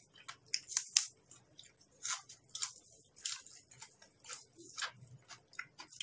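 A person chewing food with the mouth working wetly: irregular smacks and clicks of the lips and tongue, several to the second.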